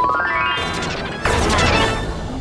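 Editing sound effect marking a scene change: a pitched tone sweeps upward through the first half, then a sudden loud crash-like hit comes in about halfway and dies away near the end.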